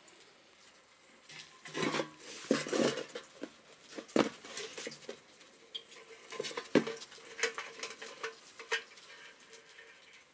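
A rusty metal motorcycle fuel tank being handled in a plastic tub: irregular knocks, clatter and scraping, loudest about two to three seconds in and again near four and seven seconds.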